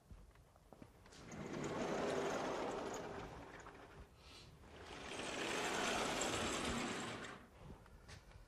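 Vertical sliding chalkboard panels moved twice in their frame: two long rumbling, rushing slides, each building up and then fading, the first about a second in and the second past the halfway point.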